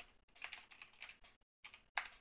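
Computer keyboard typing: a quick run of keystrokes entering a short word, then one sharper, louder click near the end.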